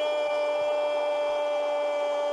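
A single steady pitched tone with a stack of overtones, held without wavering.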